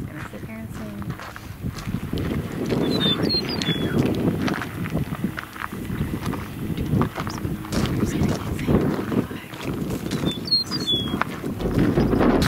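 A meadowlark singing two short, high, descending whistled phrases, about three seconds in and again near the end, over low, indistinct voices.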